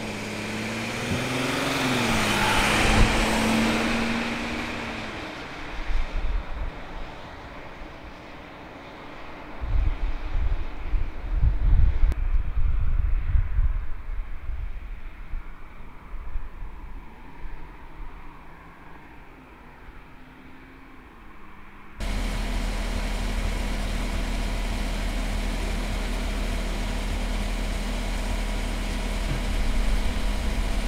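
Ambulance driving past, its engine and tyre noise swelling to a peak a few seconds in and then fading. Low vehicle rumbling follows in the middle. After a sudden cut about two-thirds of the way through, a steady idling engine hum.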